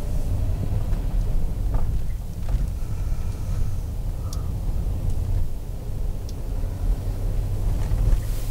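Car driving slowly on a paved road, heard from inside the cabin: a steady low rumble of engine and tyre noise.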